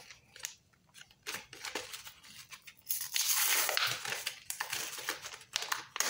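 Plastic battery blister packaging being handled and torn open: scattered small clicks and crinkles, with a longer rustling tear about halfway through.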